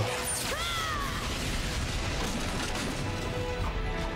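Cartoon action sound effects: a short falling zap of an energy blast about half a second in, then the steady crashing rumble of an explosion over background score.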